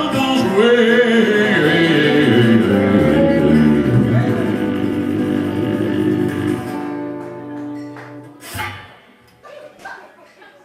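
Small live country band of acoustic guitar, electric guitar and upright bass playing a phrase, the held sung note breaking off at the start. The playing winds down about seven seconds in, leaving a quiet gap with a brief sound near the end.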